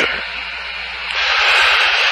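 Steady hiss of static on an open radio intercom channel, growing louder about a second in.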